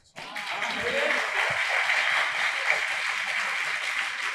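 Audience applauding: a steady clatter of many hands clapping that starts just after the beginning.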